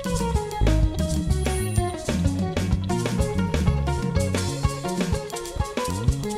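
Live band playing an instrumental passage: electric bass guitar, drums and guitar over a steady beat.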